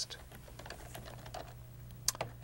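Typing on a computer keyboard: a run of light key clicks over a faint steady low hum.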